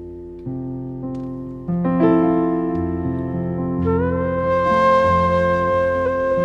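Slow instrumental music: sustained keyboard chords change every second or so. About four seconds in, a bamboo transverse flute enters with a long held note over them.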